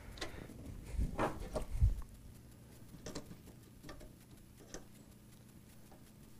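Hands working a hose clip onto flexible coolant tubing at a water block inside a computer case: scattered rustling and small clicks, with two dull bumps in the first two seconds and a few faint ticks after.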